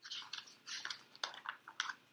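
A picture-book page being turned by hand, the paper rustling and crackling in a quick string of crinkles.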